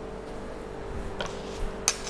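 Quiet kitchen background with a faint steady hum, and a few light clicks from utensils being handled, the sharpest near the end.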